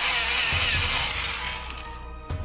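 Colored pencil shading on paper: a dry, scratchy hiss that fades out after about a second and a half, over background music.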